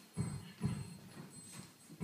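Dancers' feet stamping and stepping on a wooden stage floor: two heavy thuds about half a second apart, then a few softer footfalls.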